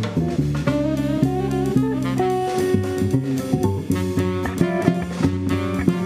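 A live jazz quartet playing: saxophone, electric guitar, double bass and drum kit, with steady drum and cymbal strokes under moving guitar and bass lines.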